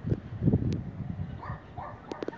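A dog barking a couple of times near the end, over an irregular low rumbling on the microphone that is loudest about half a second in.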